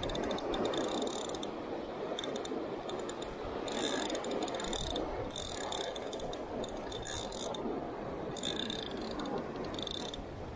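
Alvey sidecast fishing reel clicking in repeated short bursts of fine ratchet clicks, with the wash of surf behind.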